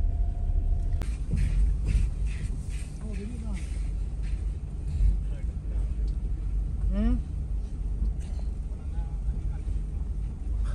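Low, steady rumble of a car's engine and tyres crawling over a slushy, snow-covered road, heard from inside the cabin, with a few knocks early on and brief calls from men outside the car.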